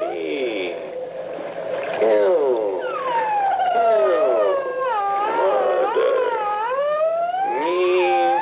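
Radio-drama sound effect of a dolphin's high squeak played back slowed down from tape, heard as a warbling, whistle-like voice whose pitch swoops up and down in long glides. In the story it is the dolphin's recorded answer naming the killer.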